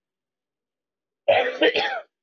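A person coughing into their fist, a quick run of about three loud coughs starting just over a second in; a lingering cough from a cold.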